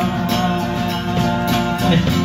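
Live band music: electric guitar and drum kit accompanying a singer who holds one long note.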